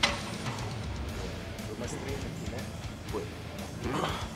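Background music, fairly quiet, with a low bass and drum bed.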